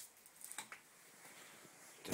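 Near silence with a sharp click at the start and two fainter clicks about half a second in.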